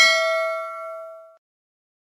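Bell-chime sound effect for a notification-bell button being clicked: a single ding with several pitches that rings on and dies away about one and a half seconds in.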